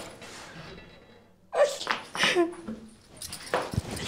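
A woman crying: quiet at first, then sudden sobbing, wailing cries about a second and a half in, with more sobs near the end.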